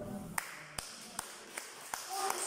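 Sharp taps in an even beat, about five every two seconds.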